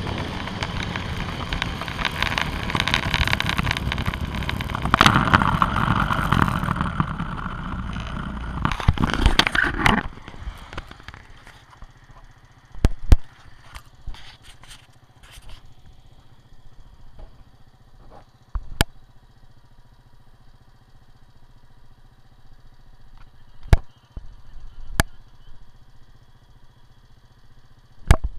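A quad bike's engine running with heavy wind noise on the microphone for about ten seconds. It then cuts off suddenly, leaving a quiet background with a faint low hum and a few sharp clicks and knocks.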